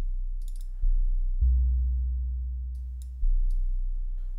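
Deep synth bassline from Flechtwerk, a free Max for Live emulation of the Mutable Instruments Plaits synth module, played on its own: a few low sustained notes, each starting sharply and fading slowly, the fullest and longest from about one and a half seconds in to about three seconds.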